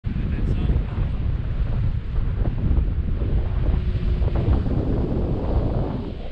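Wind buffeting the microphone of an action camera on a selfie stick in paragliding flight: a loud, steady, rumbling rush of airflow.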